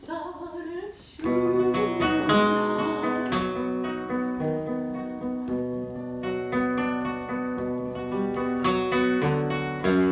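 A sung phrase with vibrato fades out in the first second, then a nylon-string classical guitar plays a solo interlude of plucked notes and chords.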